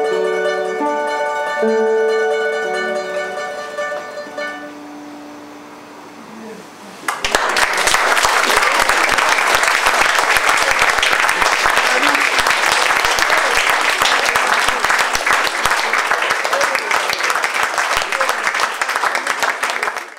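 Classical guitar and bowl-back mandolin duo playing the final notes of a piece, which ring out and fade away over about five seconds. About seven seconds in, audience applause breaks out suddenly and carries on steadily.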